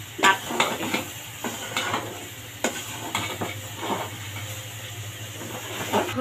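A metal spoon scraping and knocking against an aluminium pot as toasted rice and meat are stirred over the heat, with a faint sizzle. The strokes come irregularly and thin out after about four seconds.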